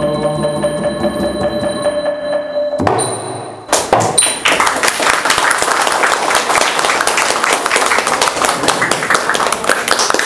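Khmer mallet-percussion ensemble, xylophones played with mallets, closing the piece on a ringing final note that stops just under three seconds in. About a second later an audience breaks into steady applause that runs on.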